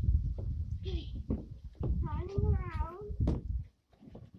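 A child's wordless voice sound, drawn-out and wavering, about two seconds in and lasting about a second. Under it runs a low rumble with a few knocks, which stops just before the end.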